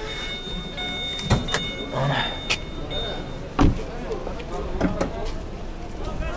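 Chevrolet Captiva with its driver's door open: a steady electronic warning tone from the car for the first three seconds or so, then a few sharp clicks and knocks from the car's body, the loudest about three and a half seconds in.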